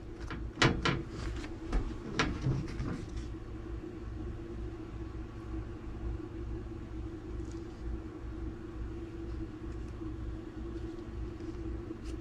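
A few light knocks and taps in the first three seconds as a plastic cutting board is handled and shifted on the counter, over a steady low hum that continues throughout.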